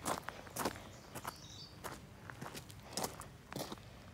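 Footsteps of a person walking over gravel and wet grass, a series of irregular steps about half a second apart.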